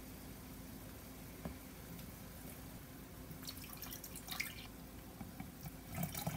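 Faint trickling and dripping of chicken broth being poured from a glass measuring cup into a plastic container, with a small knock about a second and a half in.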